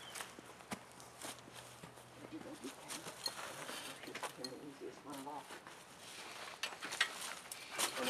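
Scattered faint clicks and rustles of hooves and boots shifting on leaf-covered ground as a miniature zebu cow has its back foot held up, with faint murmured voices in the middle and a few sharper clicks near the end.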